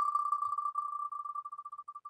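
Ticking sound effect of an on-screen prize-wheel spinner: rapid high ticks that run together at first, then slow into separate ticks and grow fainter as the wheel winds down.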